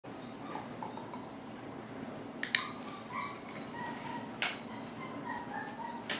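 A dog whining faintly in thin high tones, broken by two sharp clicks in quick succession about two and a half seconds in and another about four and a half seconds in.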